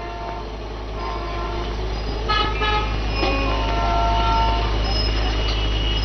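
A steady low hum runs under everything. From about two seconds in, several faint sustained horn-like tones come and go at shifting pitches, some sounding together.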